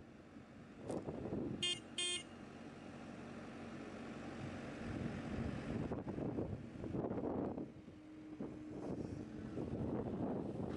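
Skid steer loader running and driving, a low uneven machine rumble. About two seconds in, two short beeps sound half a second apart.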